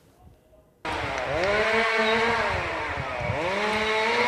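Chainsaw cuts in suddenly about a second in and runs at high revs, its engine pitch sagging and climbing back up twice.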